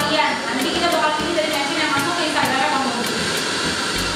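Indistinct chatter of several people talking in a room, over a steady background hiss.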